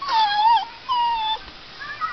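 Brittany puppy whining: two high-pitched whines of about half a second each, then a brief faint one near the end.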